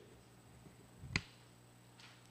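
Quiet room tone with a low steady hum. About a second in comes one sharp click of microphone handling as the held gooseneck conference microphone is let go.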